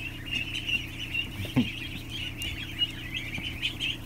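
A large flock of ducklings and goslings peeping continuously, a dense chorus of short high peeps, over the steady hum of an electric box fan. One short, low, rising call stands out about a second and a half in.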